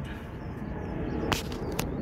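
A sharp click of a glass beer bottle being set down on a metal fire-pit grate, with a smaller knock just after, over a steady low outdoor rumble.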